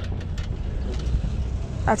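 Riding lawn mower's 19 HP Briggs & Stratton engine running at a steady low idle.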